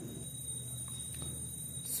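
Quiet room tone with a faint, steady high-pitched whine.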